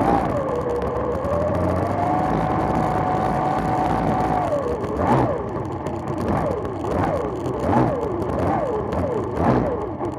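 Two-stroke outboard engine of an OSY-400 racing boat running hard, holding a steady high pitch for about four seconds. It then revs up and down in quick repeated swings, about one and a half a second, over a rush of wind and water.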